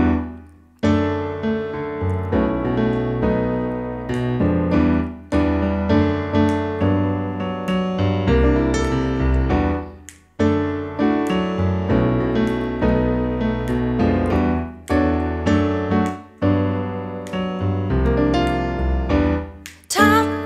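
Roland digital piano playing a solo introduction of full chords over a deep bass line. Each chord is struck and left to ring, with a brief pause about halfway through.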